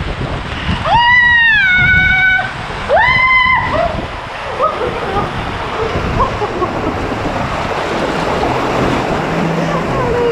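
Water rushing and splashing around an inner tube sliding down a water-slide channel, with a woman's two long, high-pitched cries about a second and three seconds in.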